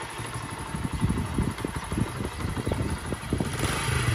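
Small motorcycle engine idling, with an even pulse of firing strokes that grows a little louder near the end.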